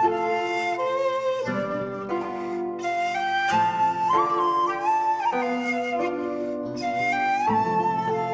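Pan flute playing a slow melody of long held notes, sliding into some of them, over sustained chords that change every second or two.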